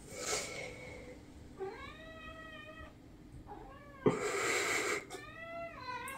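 A household pet calling: three drawn-out whining calls that rise and then fall in pitch, the middle one short, with a brief rush of noise between the second and third.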